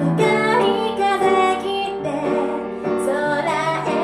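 A woman singing into a microphone, accompanied by a grand piano.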